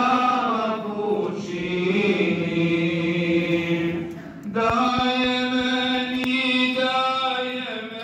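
Men's religious chanting through the mosque's microphone: long, held, ornamented vocal lines, with a short breath pause about halfway before the chant resumes.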